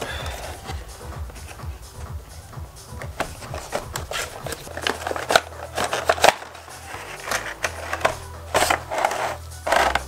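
Cardboard fan box being slid out of its sleeve and opened by gloved hands, with scraping and crinkling of cardboard and a plastic packaging tray, over background music with sustained low bass notes.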